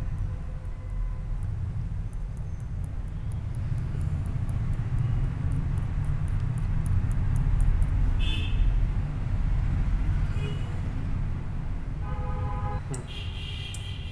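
Steady low rumble of background noise, with faint quick ticking, about four ticks a second, in the first few seconds.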